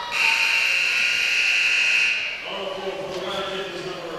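Gym scoreboard horn at the scorer's table sounding one long, steady, high-pitched blast of about two seconds during a stoppage in play.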